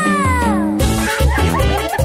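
Tambordeón band music: a long note slides steadily downward in pitch, then about 0.8 s in the full band enters with a heavy low beat and drum strokes.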